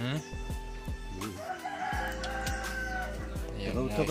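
A rooster crowing in long drawn-out calls, over background music with a deep, repeating bass beat.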